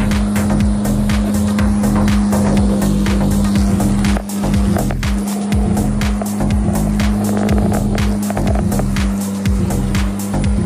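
A lawn mower running steadily as it is pushed across grass, with background music over it.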